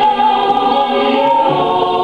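A group of men and women singing a Samoan vi'i, a song of tribute, many voices together on long held notes.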